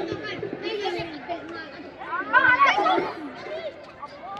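Voices calling and chattering, with a loud, high-pitched shout about two seconds in.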